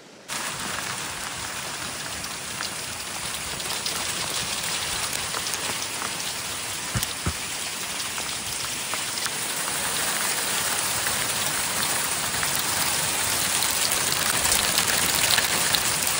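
Hailstones pelting down, a dense patter of many sharp ticks, starting abruptly and growing slowly louder.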